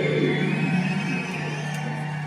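Les Paul-style electric guitar holding a low note that rings on and slowly fades.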